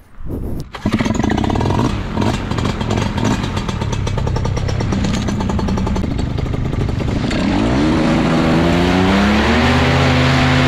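Paramotor engine and propeller running at a low throttle, then revving up from about seven and a half seconds in to a steady high throttle as the pilot starts the launch run.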